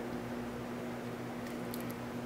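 Steady background hum and hiss of an electric fan running, with a few faint ticks near the end.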